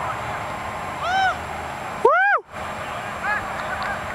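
Excited whoops from people celebrating a made field goal: three short yells, each rising and falling in pitch, the loudest about two seconds in.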